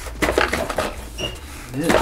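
Light knocks and rattles from a foam RC airplane as it is pressed down and bounced on its thin wire landing gear and foam pool-noodle wheels on a workbench.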